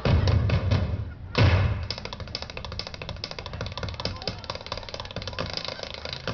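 Voices over music from a stage loudspeaker, heavily distorted and crackling. Two heavy low thuds come in the first two seconds.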